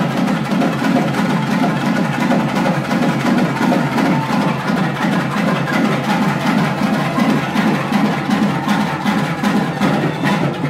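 Loud, fast drumming with a steady, continuous beat.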